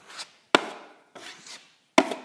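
Drywall taping knife scraping joint compound across a patched hole, a few short strokes. Two sharp taps stand out, about half a second in and at the end, the last as the blade knocks against the mud pan.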